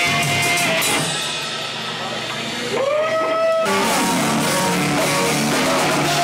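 Live rock band with electric guitar and drums playing loud. About a second in the sound thins out; near the middle a single note slides up and holds, and then the full band crashes back in all at once.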